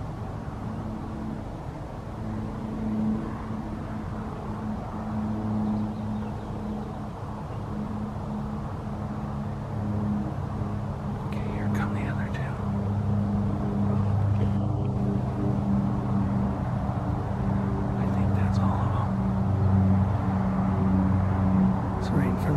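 A car engine idling steadily with a low hum that grows slightly louder in the second half.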